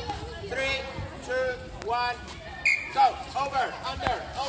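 Children's high-pitched voices calling out and chattering, with quick repeated syllables near the end, and one sharp tap a little before two seconds in.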